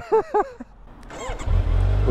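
2019 Kawasaki Z900's inline-four engine starting up about a second and a half in and settling into a steady low idle, a purr.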